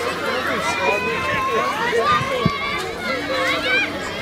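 Many children's voices overlapping, shouting and calling out at once.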